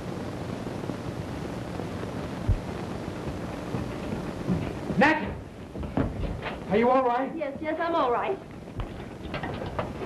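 A steady rushing hiss with a single low thud about two and a half seconds in, then, from about halfway, men's loud wordless shouts and cries, one rising sharply at the start.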